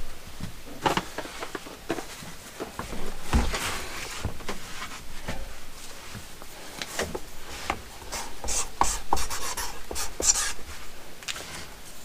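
Household objects being handled and shifted: irregular clicks, light knocks and rustling of plastic bins, cardboard boxes and bags being moved around.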